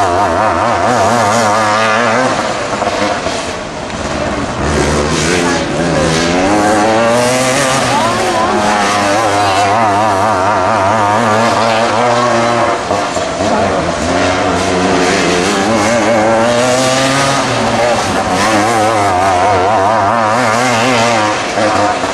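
Outlaw dirt kart engines running at racing speed. The pitch repeatedly drops and climbs back up as the karts slow for the turns and accelerate out of them.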